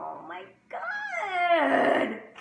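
A woman's tearful, wordless crying sounds: a short whimper that fades, then a louder drawn-out whimpering wail whose pitch rises and then slides down, as she is overcome with emotion.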